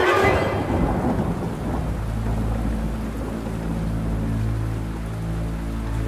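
A thunderclap, loudest right at the start and rolling away over the next two seconds or so, followed by a low steady rumbling hum.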